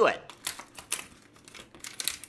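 Clear plastic blister pack being torn open from its cardboard backing: a string of irregular sharp crackles and clicks.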